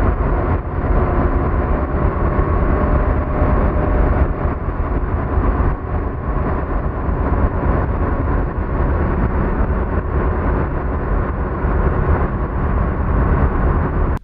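Wakeboard towboat running at speed: a steady, loud rumble of engine and rushing water.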